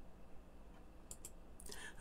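Quiet room tone with a low hum, a couple of faint clicks about a second in, and a short soft rush of noise just before the end.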